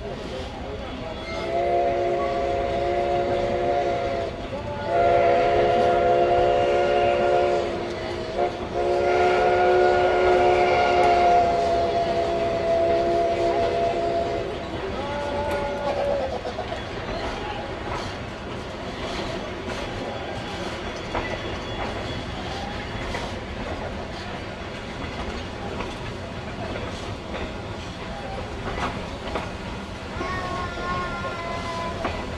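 Steam locomotive whistle sounding a chord in three long blasts, the third the longest, then a short fourth, as the narrow-gauge train pulls out. After it the train rolls on with a steady rumble and scattered clicks from the wheels on the rail joints.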